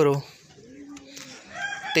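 A man's word ends at the start, then faint bird calls come from the background: a distant rooster crowing, its call rising in near the end.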